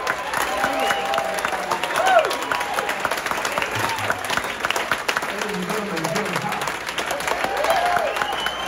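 Concert audience applauding, dense steady clapping with voices calling out and cheering over it.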